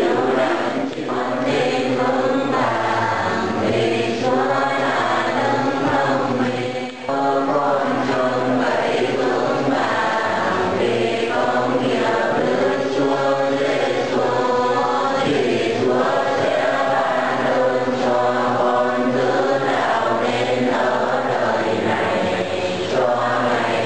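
A large group of voices chanting together in unison, steady and continuous, with one brief break about seven seconds in.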